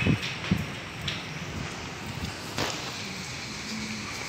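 Steady outdoor background hiss with wind rumbling on the microphone, a few low thumps in the first half-second, then scattered faint clicks.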